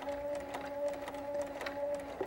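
Sewing machine running at a steady speed, a steady hum with faint ticks, stitching a hemstitch with a double wing needle.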